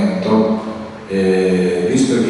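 Chant-like vocal music, a low voice holding long steady notes, with a brief drop about a second in.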